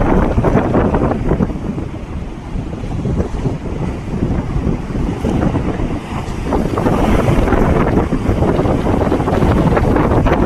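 Rough sea surging and breaking against a sea wall, with strong wind buffeting the microphone. The noise eases a little a couple of seconds in and swells again from about seven seconds in.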